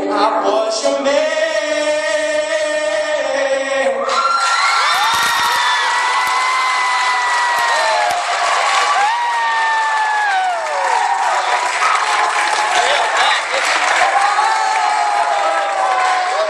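A male singer holds a final sung note for about four seconds; it cuts off, and an audience breaks into loud applause and cheering, full of high-pitched whoops and shrieks, that carries on to the end.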